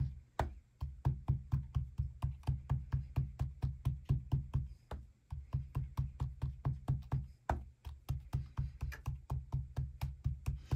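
Ink blending pad dabbed (pounced) repeatedly through a plastic stencil onto shrink plastic on a tabletop: rapid dull taps, about five a second, with a few brief pauses.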